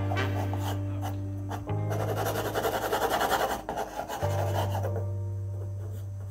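Background music with long sustained bass notes, over which a pencil scratches on paper in quick hatching strokes, loudest for a second and a half or so in the middle.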